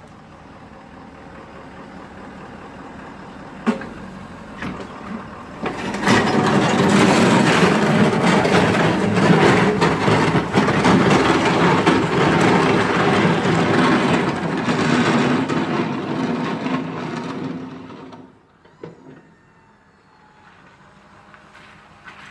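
Ford F-250 diesel pickup with a front snowplow running and backing away. There is a sharp click about 4 s in; from about 6 s the engine and its noise grow loud and steady, then fall away suddenly near 18 s.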